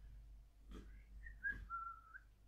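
A faint, short whistle of a few notes stepping down in pitch in the second half, with a couple of soft clicks.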